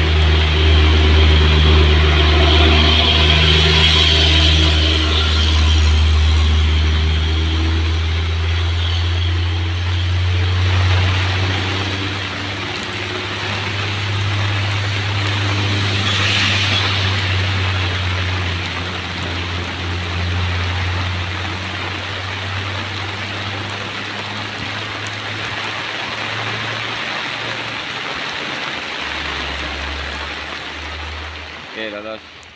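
Loaded Mitsubishi Fuso diesel truck's engine droning as it climbs away up a wet grade, its drone growing weaker after about ten seconds as the truck pulls into the distance. Steady rain hiss runs underneath.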